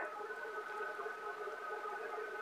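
Pause in speech: faint steady background hum with a few held tones over light hiss, like room tone.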